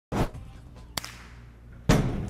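Sharp impact sounds: a crack right at the start, a small click about a second in over a low hum, and a loud bang near the end as a door is burst open for a room entry.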